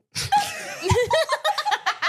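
Women laughing heartily together, in broken peals.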